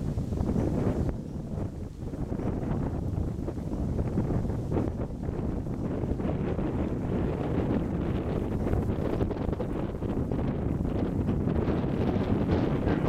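Wind buffeting the camera's microphone, a steady low rumble.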